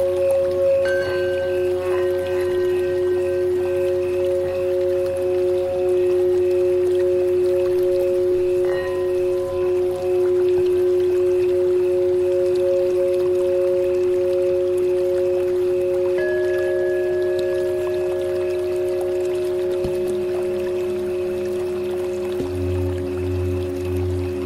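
Tibetan singing bowls ringing in a meditation music track: two long, steady tones that pulse gently, with fresh strikes adding higher ringing tones about a second in and again near nine seconds. Another bowl joins at around sixteen seconds, and a lower pulsing drone comes in near the end.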